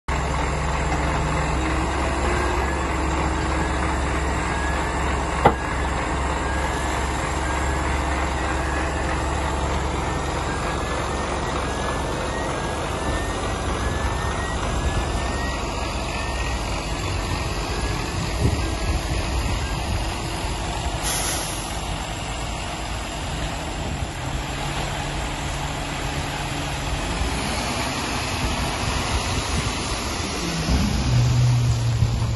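Mercedes Actros 3240 tipper lorry's straight-six diesel engine running steadily while it powers the tipping hydraulics, raising the steel body until the load of asphalt planings slides out onto the ground. A short sharp air hiss comes about two-thirds of the way through, and a single sharp click comes early in the tip.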